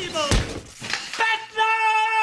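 A man shouting excitedly, ending in one long held shout, with a thud about a third of a second in.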